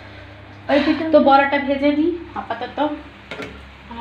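A voice speaking briefly for about two seconds, over a faint steady sizzle of battered vegetables frying in oil in a pan. A couple of sharp clicks come near the end.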